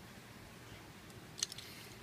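Plastic parts of a Transformers action figure being handled and folded into motorcycle mode: one sharp click about one and a half seconds in, followed by a short rustle.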